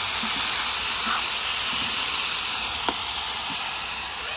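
Chopped bottle gourd sizzling in hot oil in a black iron kadhai: a steady hiss that eases slightly, with one ladle knock against the pan about three seconds in.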